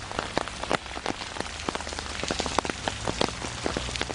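Steady rain, with a dense scatter of sharp clicks from individual drops landing close by.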